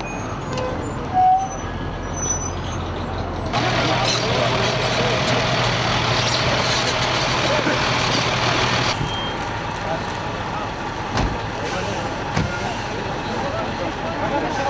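Heavy military vehicle engines running outdoors, a steady low hum over rumbling noise, louder for about five seconds in the middle, with voices around them.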